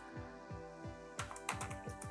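Computer keyboard typing: a quick run of keystrokes in the second half, over soft steady background music.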